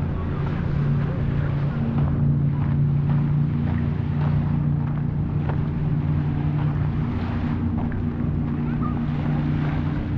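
A steady low engine hum with several held tones. Under it, faint crunching footsteps on a gravel path come about twice a second, with some wind on the microphone.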